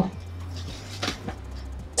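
Curtain-tape cords being pulled through the tape by hand, gathering jersey fabric: a few faint short rustles and ticks about a second in, over a steady low hum.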